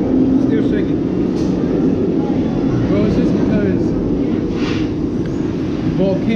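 Background chatter of other diners over a steady low rumble.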